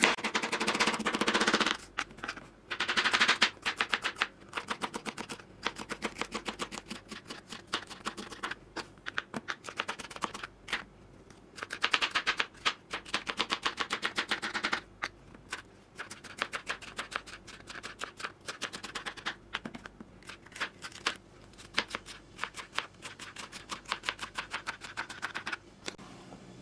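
Kitchen knife slicing a green sweet pepper into thin strips on a plastic cutting board: quick, even runs of knife taps against the board, broken by short pauses.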